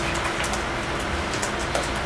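Room tone through the meeting-room microphones: a steady hum with an even noise bed and low rumble, and no speech.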